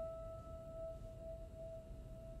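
A single high grand piano note left to ring, one pitch with its overtones, dying away slowly after being struck.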